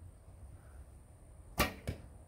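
A longbow shot: the string is released with a sharp snap about one and a half seconds in, followed about a third of a second later by a second, quieter knock as the arrow strikes the target.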